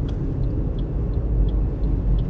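Steady low rumble of road and engine noise inside a moving car's cabin, with faint light ticks about three times a second.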